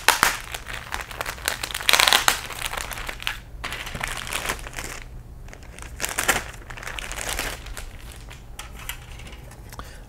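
Clear plastic bag crinkling in irregular bursts as a large sprue of plastic model-kit parts is handled inside it and drawn out, loudest near the start and about two seconds in.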